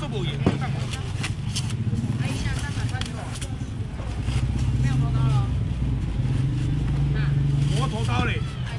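Market crowd chatter over the steady low hum of an engine running, which grows louder about four seconds in and drops back near the end. There is a single sharp knock about half a second in.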